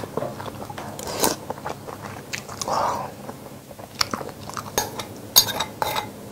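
A person chewing and biting a mouthful of food close to the microphone, with many short, wet mouth clicks. A few sharper clicks come near the end.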